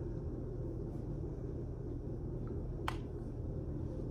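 Steady low room hum with no speech, broken by one short sharp click about three seconds in.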